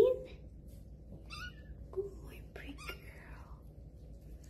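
Kitten meowing: one meow trailing off right at the start, then a few faint short mews, with soft whispering.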